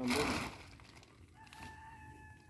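A shovelful of chopped silage tipped into a woven plastic sack, a short rustling rush. About a second and a half in, a rooster crows faintly with one long held note.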